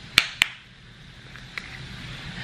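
Two sharp plastic clicks close together near the start, from the flip-top cap of a plastic honey bottle being snapped, followed by faint handling of the bottle.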